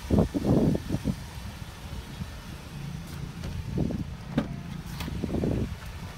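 Low rumble of wind and handling noise on a phone microphone, with a few sharp clicks in the second half as the car's driver door is unlatched and swung open.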